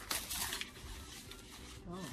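Dry rustling and crackling of sweetcorn leaves and husk as hands work a cob on the stalk, loudest in the first half second and then fading to a fainter rustle.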